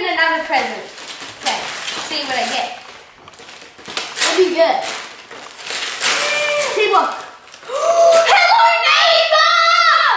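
Children talking and exclaiming excitedly, loudest near the end, with wrapping paper rustling and tearing in between.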